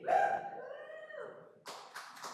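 A person's voice holding one long drawn-out call for about a second, falling in pitch at its end. Near the end a noisy burst sets in, the start of clapping and cheering.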